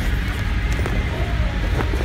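Low rumbling handling noise on a phone microphone as a purse is moved and turned close to it, with faint background music.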